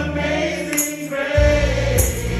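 A man singing a gospel song through a microphone and PA, accompanied by an electronic keyboard with sustained bass notes. A bright percussion hit falls about every second and a quarter. The bass drops out briefly just past halfway and comes back strongly.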